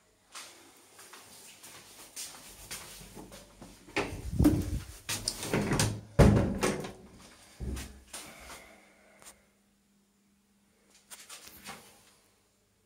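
A metal barrel bolt on a wooden door being worked by hand, the door knocking and rattling against its frame: an irregular string of clunks and scrapes, loudest about four to seven seconds in, then a few more knocks near the end.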